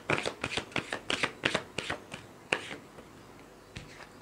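A tarot deck being shuffled by hand: a quick run of card slaps and riffles, about four or five a second, that stops about two and a half seconds in, followed by one more soft card click near the end.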